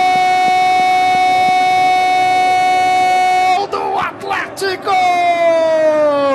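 Football commentator's drawn-out goal cry, a single shouted "Gol!" held at one steady pitch for about five seconds. After a few quick words comes a second long shout that slides down in pitch near the end.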